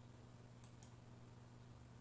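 Near silence with a faint steady low hum, broken by two faint computer-mouse clicks about a quarter of a second apart, a little after half a second in, as a menu item is selected.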